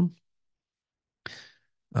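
A person's short sigh: one breathy exhale about a third of a second long, a little past the middle, between spoken words.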